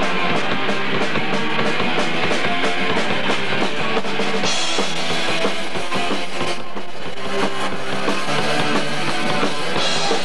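Punk rock band playing live without vocals: distorted electric guitar and bass over a fast, steady drum kit beat, loud and lo-fi as caught on a camcorder's microphone. The beat briefly breaks about two-thirds of the way through.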